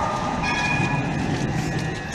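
Street tram running past at close range: a steady low rumble, joined about half a second in by a steady high whine.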